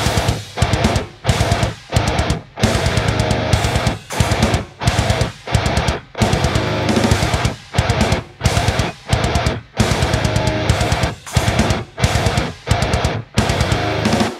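Heavy metal guitar: a distorted seven-string electric guitar with low-output DiMarzio PAF 7 pickups playing tight, stop-start riffs. The riffs break off into short silent gaps many times.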